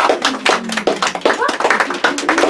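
A small audience applauding, with people talking over the clapping.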